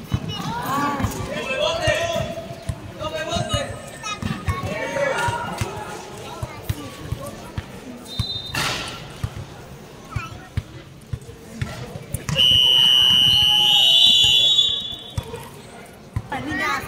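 A basketball bouncing on a hard court amid players' shouts and calls. Near the end comes a loud, high-pitched tone held for about two and a half seconds, stepping up in pitch partway through.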